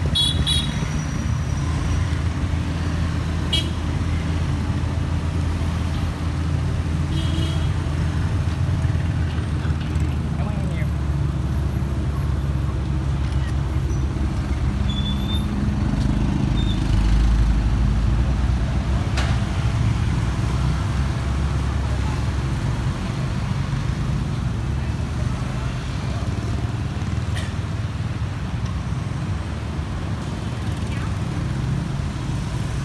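McLaren supercar's twin-turbo V8 running at low speed with a steady low rumble, swelling louder about 16 to 18 seconds in as the car moves off.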